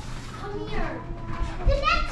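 Children's voices talking and calling out over one another in a room.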